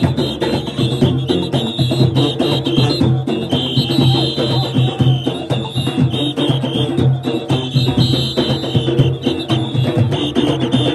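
Junkanoo goatskin drums beaten in a loud, dense, driving rhythm by a group of drummers, with a shrill whistle sounding steadily over the drumming.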